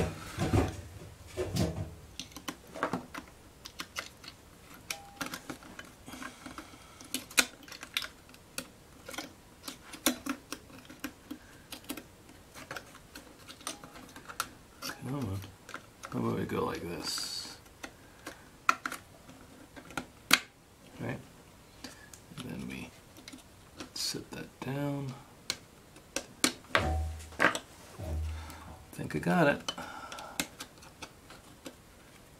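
Irregular small clicks and taps of fingers handling laptop motherboards and working the side clips of a memory module (RAM stick), with a few sharper clicks standing out.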